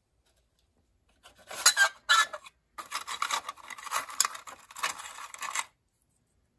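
A clear plastic drawer of a small-parts organizer being handled, with rotary-tool accessories (sanding drums and cutoff wheels) scraping and rattling inside it. There are two short scraping bursts about a second in, then about three seconds of continuous rattling and rubbing.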